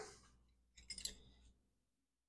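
Near silence with two or three short, faint clicks about a second in.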